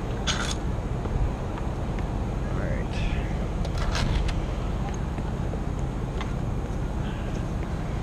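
Aerial lift truck's engine running steadily in the background, with a sharp click about half a second in and a short run of clicks about four seconds in.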